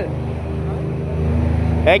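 An engine running steadily, a continuous low hum.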